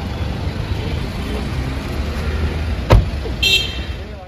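A car door slamming shut about three seconds in, the loudest sound, over a steady low rumble of street traffic. Just after it comes a brief high-pitched toot.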